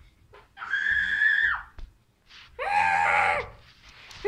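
A child's voice singing two long, high-pitched wordless notes, about a second each, the first higher than the second.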